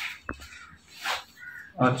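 Tissue paper wrapping crinkling and rustling as it is pulled off a rifle scope, with a short sharp click about a quarter second in.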